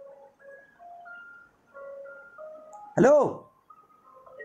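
A simple electronic tune of clear single notes, each held briefly and stepping up and down in pitch, playing steadily at a moderate level. A man's short loud call cuts across it about three seconds in.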